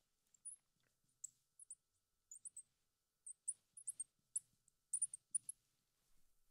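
Marker pen squeaking on the glass of a lightboard as words are written: a run of short, faint, high-pitched squeaks, sparse at first and coming thicker from about halfway.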